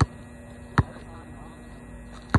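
A basketball bouncing on an asphalt court as it is dribbled: two sharp bounces about 0.8 s apart, over a steady low hum.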